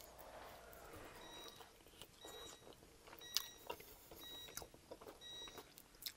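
Faint wet chewing and lip smacks of someone gnawing meat and cartilage off a saucy chicken wing tip close to the microphone. A faint high electronic beep repeats about twice a second in the background.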